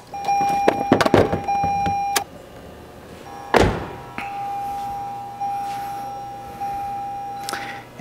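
2021 Toyota Corolla's in-cabin warning tone sounding steadily as the ignition key is turned to the on position, with several clicks from the key and ignition switch in the first second and a half. The tone breaks off, a single heavy thunk comes about three and a half seconds in, and the tone resumes until just before the end.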